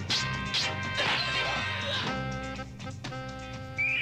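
Film soundtrack of a fight scene: orchestral-style background music with several sharp punch-and-hit sound effects, about a second apart, over the first three seconds.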